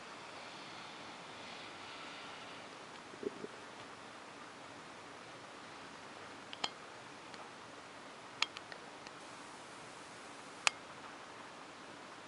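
Quiet room tone with a steady hiss, broken by a few faint sharp clicks, the clearest near the end, typical of a handheld camera being moved.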